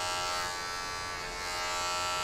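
Electric hair clipper running with a steady buzzing hum as it cuts a low fade on the side of the head, dipping a little in the middle.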